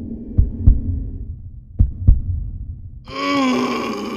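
Heartbeat sound effect: two double thumps, lub-dub, about a second and a half apart over a low hum. About three seconds in, a sustained sound effect with sliding pitches takes over.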